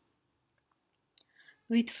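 A pause with a few faint, short clicks, then a woman's voice starts speaking near the end.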